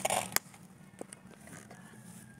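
Faint rustling and crackling of grass and handling noise as someone moves through low vegetation, with one sharp click about a third of a second in and a couple of faint ticks around a second in.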